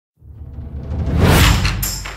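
Logo-intro music sting: a whoosh that swells up over a low rumble, peaking about a second in and then easing off.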